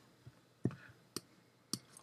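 Three faint, short computer mouse clicks about half a second apart, made while a slider is being adjusted in photo-editing software.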